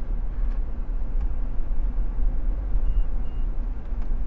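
Steady low rumble of road and engine noise inside the cabin of a moving Honda S660, whose small turbocharged three-cylinder engine sits behind the seats. Two short, faint high beeps come about three seconds in.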